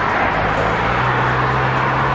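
A car passing close by on the road: a steady rush of tyre noise with a low engine hum that rises slightly in pitch about half a second in.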